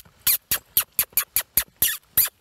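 Rapid lip-kissing sounds, about four a second, the kiss cue that urges a horse to pick up speed into a lope.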